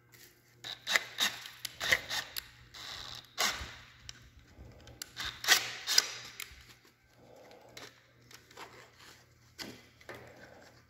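Irregular clicks, knocks and rubbing from a plastic fuel pump canister, its tubing and a cordless drill being handled. The loudest knocks come about one, two, three and a half and five and a half seconds in, and the sounds thin out in the second half.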